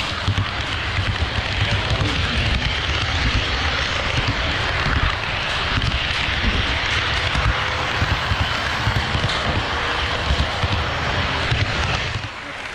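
HO scale model train running past at close range on KATO Unitrack: a steady rolling rumble of wheels on rail joints and motor. It drops away sharply at the end as the last car clears.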